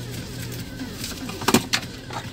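Handling noise from dash cam accessories being sorted: a light rustle, with two sharp plastic clicks about a second and a half in, over a low steady hum.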